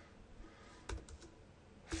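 A few faint computer keyboard keystrokes, close together about a second in, as text is typed.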